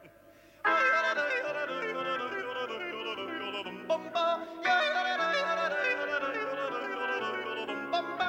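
Rock band playing live: Hammond organ and drums come back in together about half a second in after a brief break, with a stepping bass line under a wavering high lead line.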